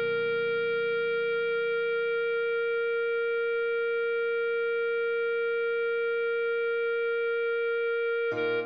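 Clarinet holding one long steady note, two tied whole notes written C and sounding B-flat, over a low backing chord that slowly fades.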